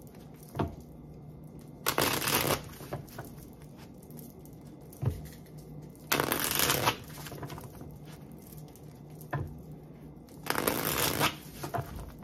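A deck of tarot cards being shuffled by hand: three short bursts of shuffling about four seconds apart, with a few light taps in between.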